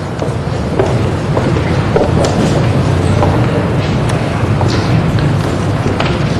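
Steady low rumble of room noise with faint, indistinct voices.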